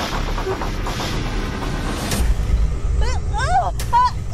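Film soundtrack with a low, steady rumbling drone under a wash of noise. Near the end, a high, voice-like sound rises and falls in pitch several times in quick succession.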